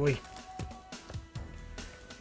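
Quiet background music with a few faint held notes, and a couple of soft knocks as a plastic toy figure is handled and set down on a table.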